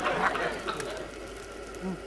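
A person's voice for about the first half-second, then a quieter stretch with low background sound.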